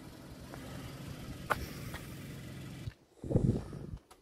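A car engine idling with a steady low hum and a single click about halfway. The sound cuts off abruptly shortly before the end, followed by a brief louder muffled burst.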